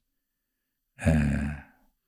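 A man's breathy, drawn-out hesitation sound, 'eee', begins about a second in and trails off within about a second.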